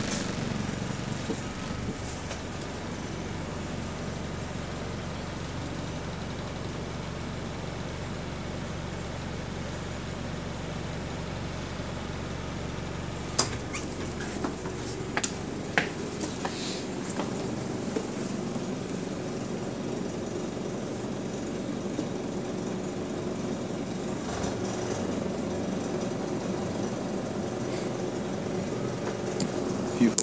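Bus engine running, heard from inside the passenger saloon as a steady low drone. About 13 s in the deep part of the drone drops away, and a few sharp knocks and clicks follow over the next few seconds.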